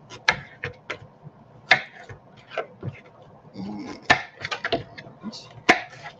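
Kitchen knife chopping carrots on a wooden cutting board: sharp, irregularly spaced knocks of the blade cutting through onto the board, with a quick run of several cuts about four seconds in.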